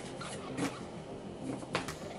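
Faint handling noises from trading cards and pack wrappers: soft rustling, with a short crackle near the end.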